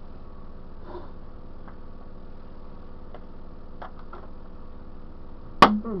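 A lull in a beating of a Barney dinosaur toy: low steady hum with a few faint taps, then near the end one sharp, loud blow on the toy with a grunted "mm".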